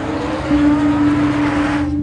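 Road traffic rushing past with a faint rising engine note, over a sustained background music chord; the traffic noise cuts off suddenly near the end.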